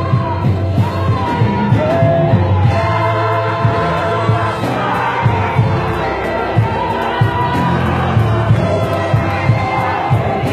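Gospel choir singing an isiZulu song at full voice, with a band keeping a steady drum beat and a deep bass line underneath.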